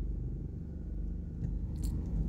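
Steady low hum of a car's engine and road noise heard from inside the cabin while driving, with a faint tick near the end.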